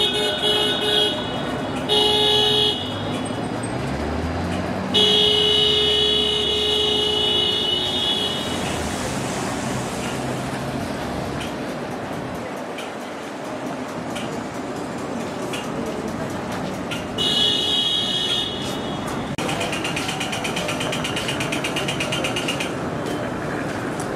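A vehicle horn honking several times over steady city street traffic: two short toots in the first few seconds, a long blast of about three seconds, and two more long blasts in the last third.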